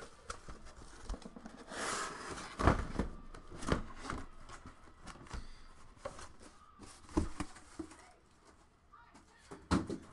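Handling noise from a corrugated cardboard case being opened and its shrink-wrapped card boxes being pulled out and set down. A rustling, scraping stretch comes about two seconds in, and several light knocks are scattered through, the last near the end.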